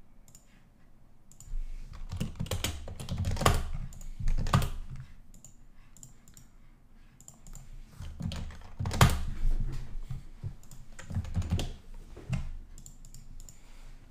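Computer keyboard typing: rapid keystrokes in three bursts, the first starting about a second and a half in, with short pauses between them.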